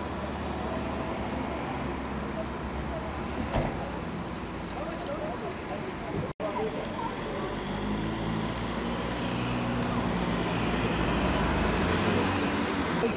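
Street noise: road traffic and a running vehicle engine, with people talking in the background. The sound cuts out for an instant about six seconds in, and after that a steady low engine hum grows louder toward the end.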